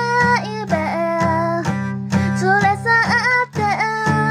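A high voice singing a melody over strummed acoustic guitar chords.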